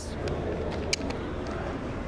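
Steady background hum and hiss with no speech, broken by one short, sharp click about a second in.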